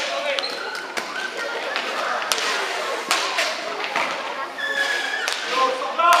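Rink hockey play in an echoing hall: sharp clacks of sticks striking the ball and the ball hitting the boards, every second or so, with players' shouts in between.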